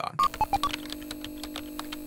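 A typing sound effect for a title card: a few quick computer beeps at different pitches within the first half second, with keystroke clicks going on throughout, over a steady electronic hum.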